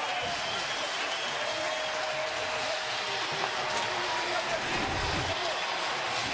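Ballpark crowd cheering and applauding steadily.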